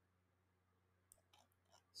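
Near silence, then a few faint computer mouse clicks in the second half.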